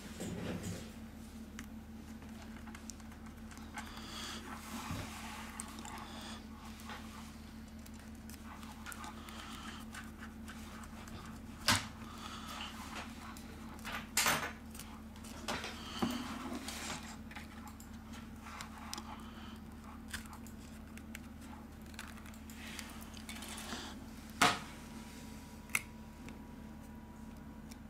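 Plastic opening pick scraping and clicking along the edge of a smartphone's glued glass back cover as it works the adhesive loose, with a few sharp clicks, the loudest near the end.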